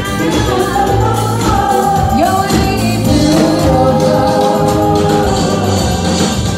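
Live band playing with voices singing the melody over a steady bass line; one sung line slides upward about two seconds in.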